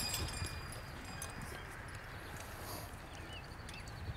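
Three Percheron draft horses coming to a halt after a "whoa": a few faint hoof steps and harness jingles early on, then quiet outdoor ambience. A few faint bird chirps come near the end.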